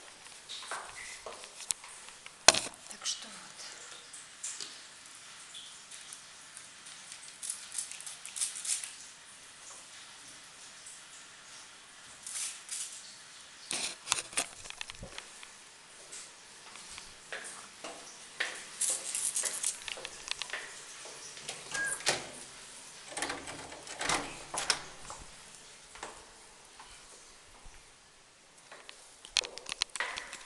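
Handling noise of a handheld phone rubbing against hair and clothing: irregular rustling and small knocks, with a sharp knock about two seconds in and several short hissing, rustling bursts.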